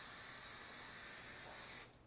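An aerosol can of spray adhesive spraying in one steady hiss that cuts off just before the end.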